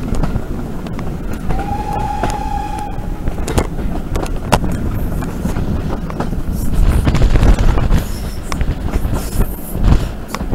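Steam-hauled train running, heard from an open carriage window: a steady low rumble and rush of air with scattered clicks from the rail joints. About one and a half seconds in, the steam locomotive gives one short steady whistle blast lasting about a second and a half.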